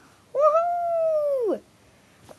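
A long, high wailing cry that holds a steady pitch for about a second and then slides steeply down at the end. It is the last of a run of three such cries.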